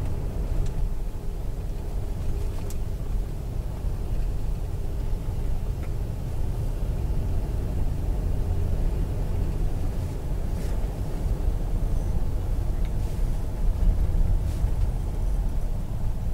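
Car driving along a paved road, heard from inside the cabin: a steady low rumble of engine and road noise.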